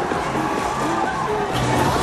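Fairground ride in motion: a rushing noise from its spinning cars over loud fairground music.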